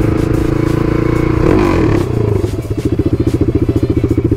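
Single-cylinder Husqvarna motorcycle engine running, then dropping to a slow idle about two seconds in, where the individual exhaust beats come through loud and open, about a dozen a second. The aftermarket slip-on exhaust has come loose from the header.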